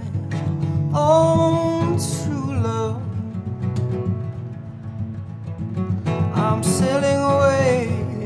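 Steel-string acoustic guitar strummed steadily while a harmonica in a neck rack plays the melody in long, bending notes, a folk instrumental passage.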